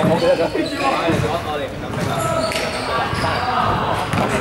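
A basketball being bounced on an indoor court floor by a player at the free-throw line, with voices talking over it.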